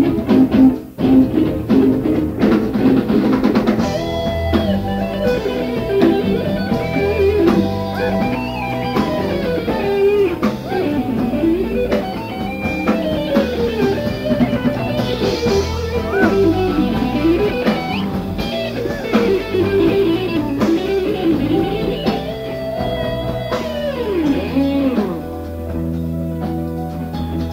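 A progressive rock band playing live: guitar, bass and drum kit, with a lead melody line that slides and swoops up and down over a steady bass and drums.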